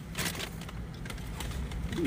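Low steady hum inside a car cabin, with a few brief rustles and knocks as a passenger twists round in his seat to reach into the back.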